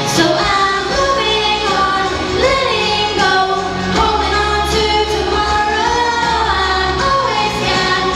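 Female vocalist singing a melody through a handheld microphone over instrumental accompaniment with a steady bass line.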